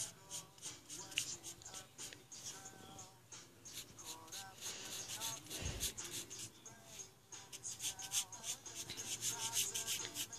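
Fine-point black marker rubbing on sketchbook paper in quick, repeated short strokes while colouring in a dark area, with faint background music underneath.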